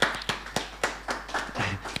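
Hand clapping in approval: a steady run of sharp claps, about four a second.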